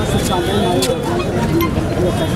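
Several people talking at once in a street crowd over a steady low rumble of traffic, with a sharp click just under a second in.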